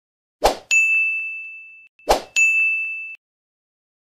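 Two end-screen sound effects, each a short sharp hit followed by a bright bell-like ding that rings out and fades over about a second: a subscribe-button click and a notification-bell chime.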